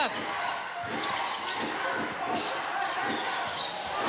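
A basketball being dribbled on a hardwood court, a bounce about every third of a second, under the steady noise of an arena crowd.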